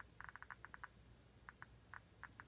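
Faint, irregular clicks from a Geiger counter: a quick cluster of about seven in the first second, then a few scattered ones. They are counts from an americium-241 smoke detector source held straight up to the detector.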